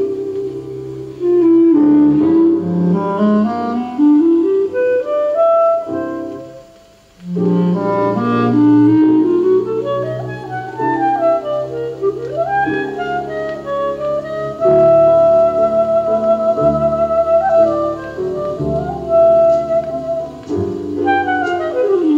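Jazz clarinet leading a slow ballad over a small-group accompaniment, with long held notes with vibrato, played from a vinyl LP through a Western Electric horn loudspeaker system (WE 12-A and 13-A horns with 555-W drivers) and picked up in the room. The music dips briefly about six seconds in before the line resumes.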